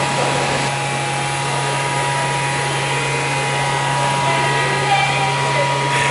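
Steady machinery hum of brewery plant: a constant low hum with two faint steady whines above it and an even background noise, unchanging throughout.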